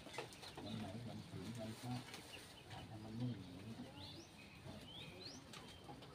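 Birds chirping: a few short rising calls, mostly from about four to five and a half seconds in, over a faint low murmur.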